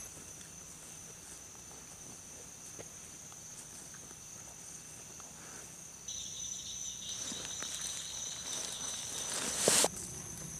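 Night insects chirring in a steady high drone. About six seconds in it grows louder and a second, lower-pitched insect band joins. Near the end comes a short loud rush of noise that cuts off suddenly.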